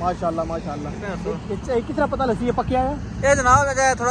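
A man speaking, with a louder burst of speech near the end, over a steady low background hum.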